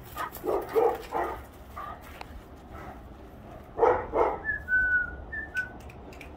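Great Dane barking in short bursts, a cluster about a second in and another about four seconds in, followed by a brief thin high tone.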